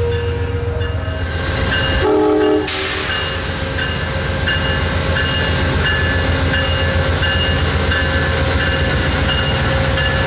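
Amtrak P42DC diesel-electric locomotive moving a passenger train, with a steady low engine rumble and wheel noise on the rails. A short multi-note horn sounds about two seconds in and cuts off suddenly.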